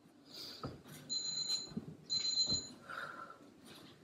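Workout interval timer beeping twice, two steady high half-second beeps about a second apart, marking the start of a work interval. Low thumps come in around the beeps.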